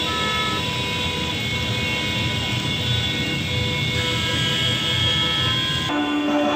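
Street din of a crowded campaign rally: a dense crowd-and-traffic noise with vehicle horns sounding in sustained tones that start and stop.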